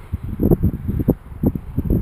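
Wind buffeting the camera's microphone: irregular low rumbles and thuds several times a second.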